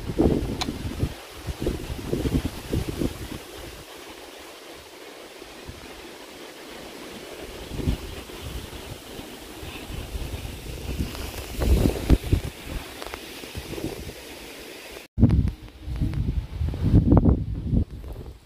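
Wind buffeting the microphone in uneven gusts, with low rumbling that swells and fades. The sound drops out for an instant about fifteen seconds in.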